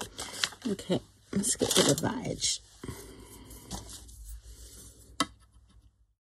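Paper and thin card rustling as a collaged tag is handled and folded by hand. There is a single sharp tap about five seconds in, as a plastic scoring ruler is set down on it.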